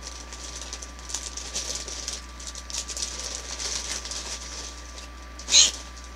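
Crinkling and rustling of a small plastic toy wrapper being handled and opened, with one short, louder crackle near the end.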